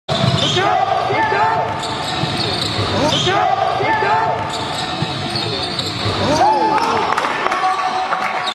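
Basketball dribbled on a hardwood gym floor, with sneakers squeaking in short bursts several times as players cut and drive.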